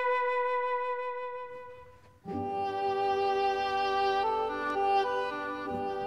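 Background music: a single held flute note fades away, then about two seconds in a fuller ensemble with strings comes in suddenly and plays a melody.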